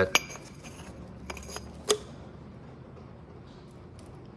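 A few light metallic clinks in the first two seconds, as a loose metal port insert from a Cat 3406E cylinder head is handled and set down.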